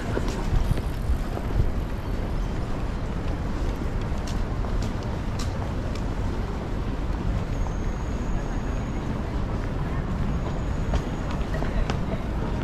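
Busy city street ambience: indistinct voices of passers-by over a steady low traffic rumble, with a few light clicks.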